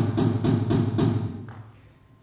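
Rapid, loud knocking: a run of hard strikes about four a second with a deep, drum-like body, stopping about a second in and ringing away. It is the knocking at the castle gate.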